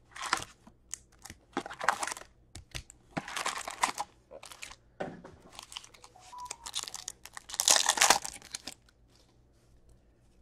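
Foil-wrapped hockey card packs crinkling as they are handled, and a pack wrapper being torn open by hand: several short bursts of crinkling and tearing, the longest and loudest about eight seconds in.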